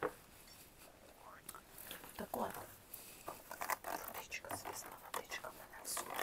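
A woman whispering, quiet at first and then more steadily from about a second and a half in, with small scattered clicks and crackles among the whispers.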